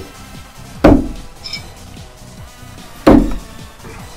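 Two no-spin throwing knives thrown reverse grip hit and stick in a wooden target: one sharp thud about a second in, another about three seconds in.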